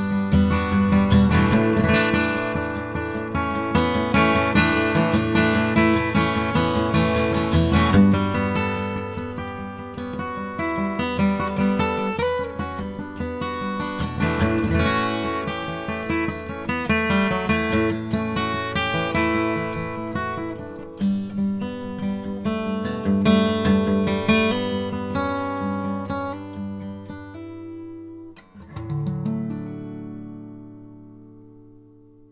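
Steel-string acoustic guitar, capoed at the second fret, playing a chord-melody solo of a folk-country tune, the melody picked out over chords. Near the end it stops briefly, then a final chord is struck and left to ring out.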